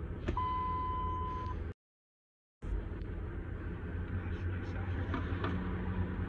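A click, then a steady electronic beep-like tone lasting about a second over a low steady car or traffic rumble. The audio then cuts out completely for about a second and returns to the same low rumble.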